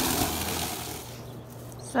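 Greenworks 40V cordless electric lawn mower running, its motor and spinning blade cutting grass with a steady whirring hiss and low hum. The hiss fades out about a second in, leaving only a faint low hum.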